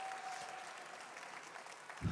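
Audience applause dying away, fading steadily.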